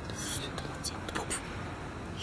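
Two people whispering to each other, hushed, with a few short hissy 's' sounds and no full voice.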